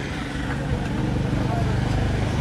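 A motor vehicle's engine running close by, a steady low hum that grows slowly louder as it approaches.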